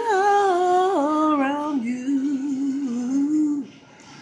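A woman singing unaccompanied without words, holding long notes that step down in pitch, ending about three and a half seconds in.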